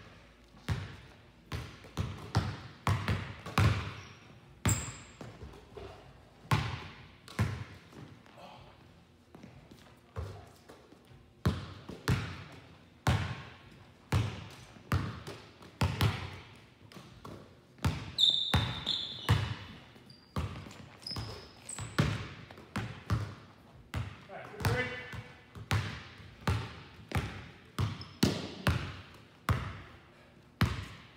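Basketballs bouncing on a hardwood gym floor during dribbling drills: an irregular run of sharp thuds, about one or two a second, each echoing in the large hall, with a few short high sneaker squeaks.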